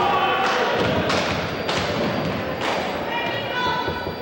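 A basketball bouncing on a hardwood gym floor, four thuds about half a second to a second apart, echoing in the hall. This is typical of a free-throw shooter dribbling before the shot.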